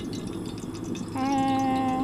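Water drops flicked into a cast iron skillet of heating peanut oil, sizzling faintly as a test of whether the oil is hot enough to fry. About a second in, a louder steady humming tone starts and holds.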